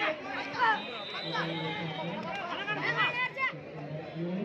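A crowd of spectators chattering and shouting around an outdoor kho kho ground, many voices overlapping, with louder shouts about half a second in and again near three seconds in.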